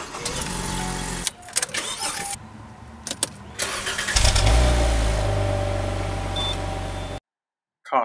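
Ignition key turned and a Ford car's engine started. About four seconds in the engine fires up loudly with a low steady note, then gradually quietens as it settles, before the sound cuts off suddenly near the end.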